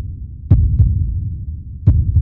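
Heartbeat sound effect: two deep double thumps (lub-dub), the pairs about a second and a half apart, each leaving a low rumble as it dies away.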